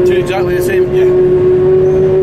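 Claas Jaguar 950 forage harvester running at work, heard from inside its cab as a loud, steady whine over a low rumble.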